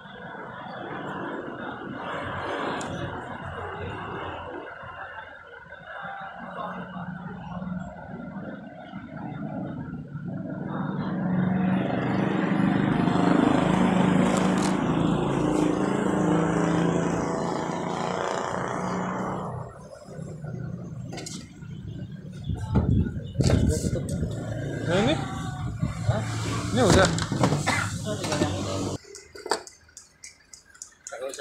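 Indistinct voices talking, loudest in the middle. A run of sharp clicks and scraping handling noises comes in the last several seconds.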